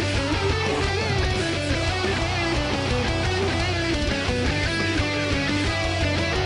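Electric guitar playing a fast, melodic metal part, with constant low end underneath.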